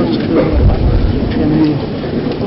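A man speaking Georgian, his voice low and in short phrases.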